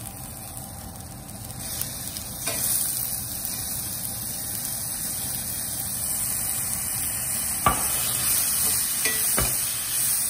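Onions and curry leaves sizzling in hot oil in a stainless steel pan; the sizzle grows louder a couple of seconds in as chopped tomatoes go in. A sharp clink near the end, and a softer one just after.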